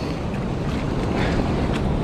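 Wind buffeting the microphone: a steady rushing noise with an unsteady low rumble.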